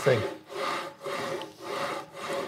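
HepcoMotion GV3 carriage on its V-wheel bearings pushed by hand back and forth along a V-guide rail coated in a wet cereal-and-milk slurry: a gritty rasping rub with each stroke, about two strokes a second. The carriage runs freely through the muck.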